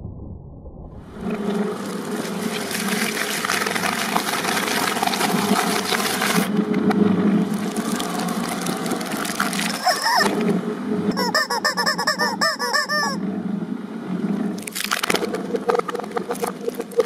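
A twin-shaft shredder's steel cutters are running and chewing through plastic: a steady grinding hum with dense crackling and crunching. About eleven seconds in, a run of rapid wavering squeals lasts about two seconds.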